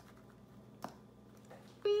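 Faint rustling and a single click a little before the middle as an African grey parrot pokes its beak among torn paper slips inside a derby hat. Right at the end a woman's drawn-out 'wee' begins.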